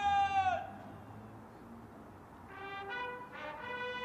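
A lone bugle call on a brass horn: one long high note that sags in pitch as it ends, a pause of about two seconds, then a slow run of held notes stepping up and down.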